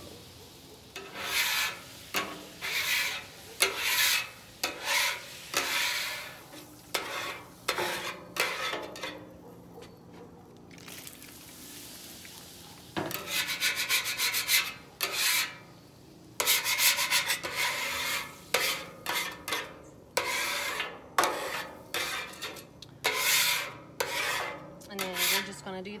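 Flat metal scraper pushed in repeated rasping strokes across a warm, water-sprayed Blackstone griddle top, scraping off cooked-on food residue. There is a quieter pause about ten seconds in, then the strokes come faster and closer together.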